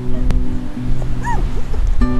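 Background music with steady held notes, and a little after a second in, one short rising-and-falling whimper from a dog.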